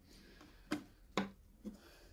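Magnet-held roof panel of a 1/10 scale model camper trailer being set back on: two sharp clicks as it snaps into place, then a fainter tap.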